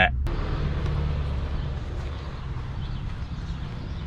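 Mitsubishi Lancer Evolution's turbocharged four-cylinder engine running with a steady low hum, heard from inside the cabin.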